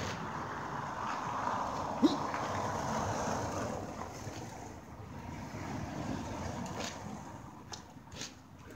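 Steady rushing outdoor background noise, with one sharp knock about two seconds in.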